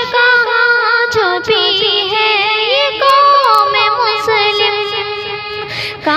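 A high voice singing an Urdu nazm (devotional poem) in long, ornamented melodic phrases with gliding turns, without clear words.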